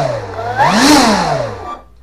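Brushless electric motor and propeller of an RC T-28 Trojan running in reverse thrust: the whine rises and falls twice with the throttle, then stops abruptly about three-quarters of the way through as the Avian ESC's brake halts the prop.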